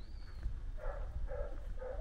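A dog barking four times in quick succession, about half a second apart, starting about a second in.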